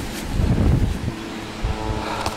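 Wind buffeting a handheld camera's microphone, a loud low rumble in gusts, strongest in the first second. From about a second in, a faint steady hum of several tones joins it.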